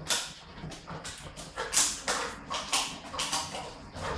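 Neapolitan mastiffs making a string of short, noisy, breathy sounds, one every half second or so.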